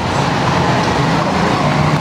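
A motor vehicle running close by, a steady engine hum with road noise.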